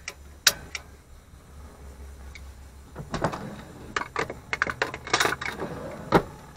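Sharp metallic clicks of a hand-held spark striker being worked at a gas stove burner to light it: two clicks early on, then a quick run of clicks from about three seconds in until the burner catches.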